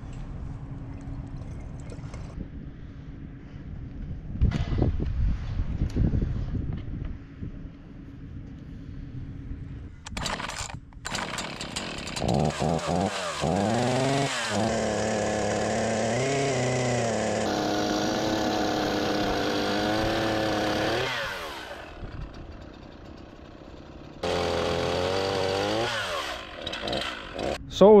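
Echo two-stroke chainsaw starting up about twelve seconds in, running for about nine seconds with the revs rising and wavering, then shut off. It runs again briefly near the end. The chain has locked up on a seized sprocket at the tip of the bar.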